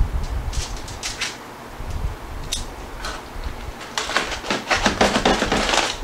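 Light clicks of tongs and a rib piece set down on a foil-lined tray, then, about four seconds in, some two seconds of dense crinkling of aluminium foil as a foil-covered rack of ribs is opened up and cut.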